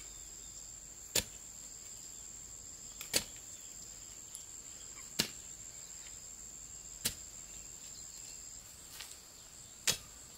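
A long-handled digging tool chopping into packed soil, five sharp strikes about two seconds apart, over a steady high insect drone.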